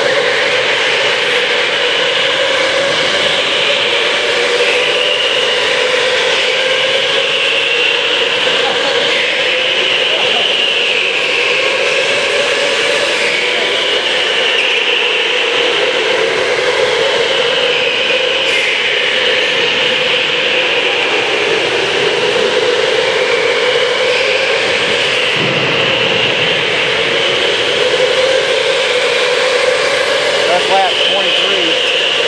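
Electric go-kart motors whining as the karts lap the track, the pitch drifting up and down as they speed up, slow for corners and pass.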